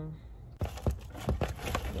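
Crinkling, crackling handling noise with many sharp clicks, starting about half a second in, as tomato seedlings, soil and plastic cups are handled.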